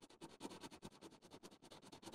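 Colored pencil lightly shading on paper: a faint, quick, even run of scratchy strokes.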